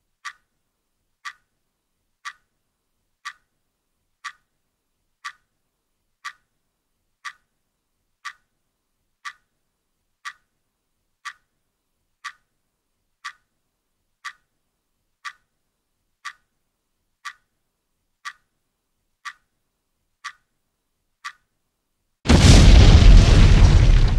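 Clock ticking evenly about once a second, then about 22 seconds in a loud explosion sound effect: a sudden deep boom that dies away over a couple of seconds.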